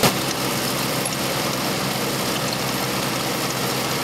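Trencher running steadily, its engine and moving digging chain cutting a narrow, deep trench in the soil.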